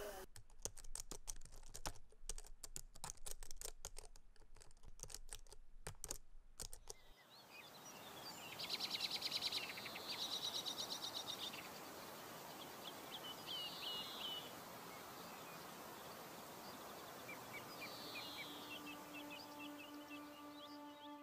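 Faint, quick irregular clicking and tapping for the first seven seconds or so. Then soft outdoor ambience with small birds chirping in short high trills, several times. Quiet music with held notes comes in near the end.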